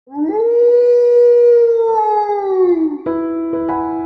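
A single wolf howl that rises in pitch, holds for about two and a half seconds, then falls away. About three seconds in, piano music begins.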